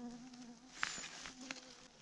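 A fly buzzing close by, coming and going, with two sharp clicks in between, the louder just under a second in.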